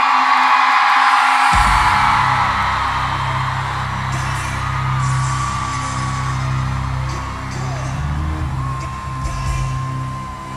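Live pop concert in an arena: the crowd screams and cheers, then about a second and a half in, a deep, bass-heavy track starts suddenly over the PA and plays on under the crowd noise.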